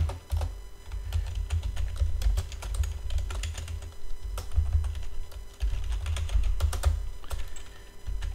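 Computer keyboard typing: quick, irregular key clicks in runs with short pauses.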